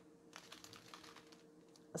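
Near silence with a few faint light clicks from small plastic bags of diamond-painting drills being handled, over a faint steady hum.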